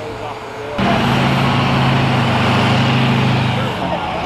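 A heavy motor vehicle running close by: a steady engine hum over a wash of road noise that starts suddenly about a second in and eases off just before the end.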